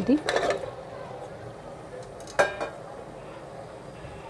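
Raw meat tipped from a steel bowl into an aluminium pressure cooker of frying masala: a short soft rush of the pieces sliding in just after the start, then one sharp metal-on-metal clink with a brief ring about two and a half seconds in.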